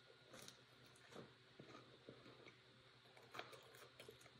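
Faint chewing of a bite of air-fried mini pizza with a crunchy crust: soft, irregular little crackles and clicks of the mouth at work.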